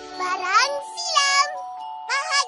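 Short cartoon title-card jingle: two quick rising, sliding voice-like notes over a steady held tone.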